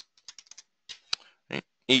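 Typing on a computer keyboard: a quick, uneven run of light keystrokes over the first second and a half, entering a ticker symbol into a charting program's search box.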